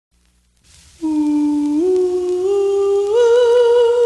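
Vinyl record playing on a turntable: faint surface noise from the lead-in groove, then about a second in a vocal group's sustained humming harmony that steps up in pitch three times and swells slightly near the end.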